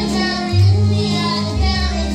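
A child singing a song solo over instrumental accompaniment with a steady bass line.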